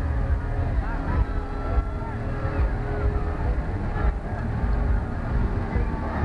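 Parade street crowd: scattered voices and calls over a continuous uneven low rumble, with a faint steady hum underneath.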